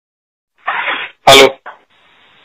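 A person sneezing once: a breathy build-up, then one sharp, loud burst about a second and a quarter in.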